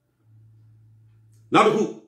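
A dog barks once, loudly and briefly, about one and a half seconds in.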